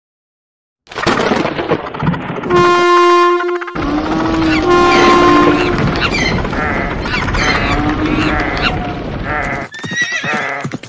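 A steam locomotive whistle blows two long blasts, starting about two and a half and four seconds in, over a rumbling noise. From about six seconds a jumble of many animal calls takes over.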